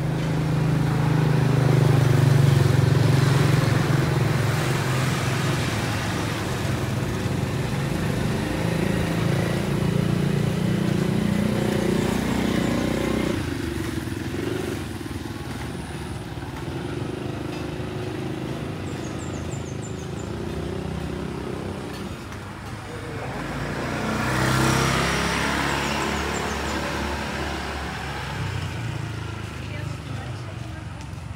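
Street traffic: a motor vehicle's engine runs close by, loudest about two seconds in and fading by about thirteen seconds, and another vehicle passes near the end.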